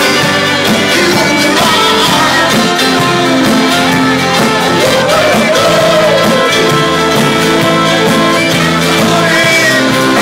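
A band playing a folk-rock song, with guitar and a steady drum beat under a pitched lead melody line.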